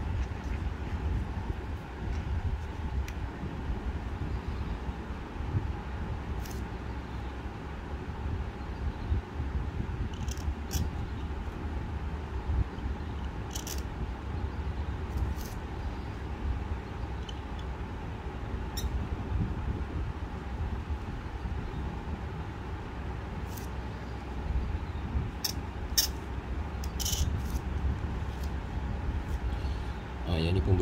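A steady low background rumble, with short dry scratches of a bamboo calligraphy pen on paper scattered through it as letters are stroked in, coming more often near the end.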